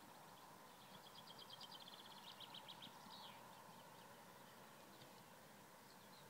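Near silence: faint outdoor background hiss, with a small bird singing a rapid, high trill of repeated short notes about a second in that lasts around two seconds and ends in a falling note.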